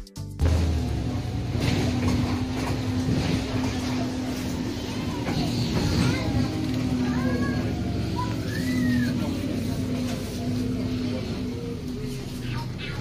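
Electronic music cuts off about half a second in, giving way to the steady drone of an Alexander Dennis Enviro 400 double-decker bus running, with voices and a few short high-pitched calls over it.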